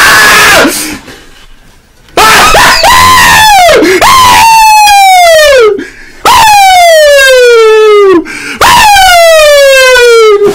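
A man yelling, then after a short lull four long, very loud screams of excitement over a big slot win, each sliding down in pitch.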